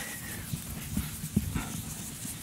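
Chalk tapping and scraping on a blackboard: soft, irregular knocks with a sharper click about one and a half seconds in.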